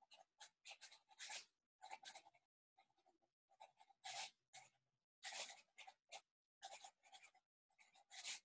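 Faint scratching of writing by hand in a paper journal, in short strokes with brief pauses between them.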